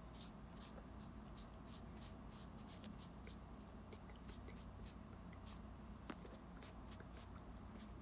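Faint soft scratching strokes and scattered light ticks close to the microphone, a paintbrush being worked over the camera as if painting the viewer. One sharper tick comes about six seconds in.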